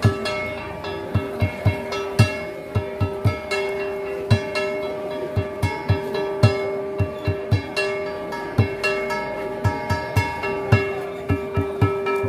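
Dao ritual dance music: a hand-held drum beaten in an irregular pattern of single strokes and quick clusters, over steady held notes.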